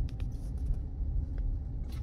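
Steady low road and engine rumble of a 2021 GMC Canyon pickup on the move, heard from inside the cab, with a few faint light clicks.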